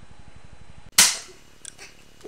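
A single sharp gunshot about a second in, very loud, fading out quickly, followed by a few faint clicks.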